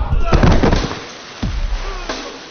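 Dubbed movie-style fight sound effects: a quick cluster of heavy hits about half a second in that dies away, then one more thud about halfway through.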